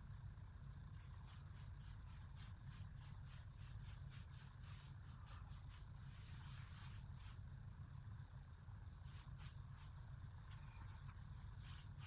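Faint, quick strokes of a dry paintbrush swishing over a painted table top, several a second, with short pauses. A steady low room hum runs underneath.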